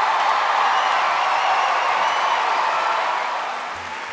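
Studio audience applauding and cheering after a comedy set, the applause fading near the end.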